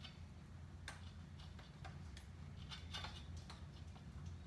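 Faint, irregular light clicks and ticks over a steady low hum.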